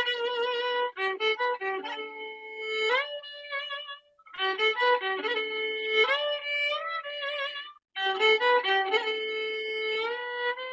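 Solo violin, bowed, playing a slow song melody in phrases with sliding notes between them. It breaks off briefly about four seconds in and again near eight seconds.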